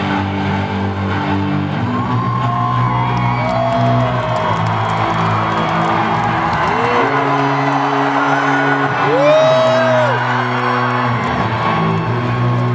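Live concert music over an arena sound system: sustained low synthesizer chords that shift every second or two, with a voice sliding up and down in a few long held notes.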